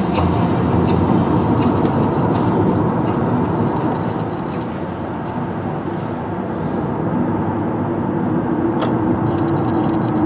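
Steady road and engine noise from inside a moving car, mostly low rumble and tyre noise, dipping slightly in level midway.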